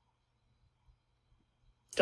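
Near silence: faint room tone, with a woman's speech starting right at the end.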